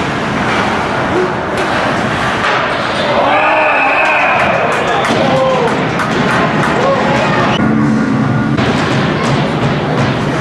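Ice hockey rink noise: clatter of sticks, skates and puck against the boards under a steady din, then about three seconds in a high shrill whistle and raised, shouting voices as play stops with a player down on the ice.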